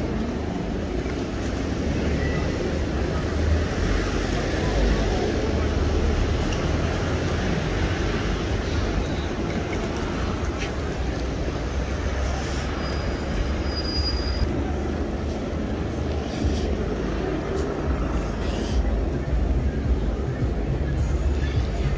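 Steady city-street ambience: traffic and buses with a deep low rumble, mixed with the murmur of passing pedestrians.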